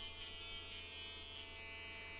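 Faint, steady electrical hum and buzz with a few thin steady high tones: room tone.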